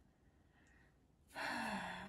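A woman sighs after about a second of quiet: a breathy out-breath with her voice sliding down in pitch.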